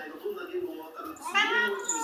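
A domestic cat meowing once, about halfway through: a single call that rises and then falls in pitch.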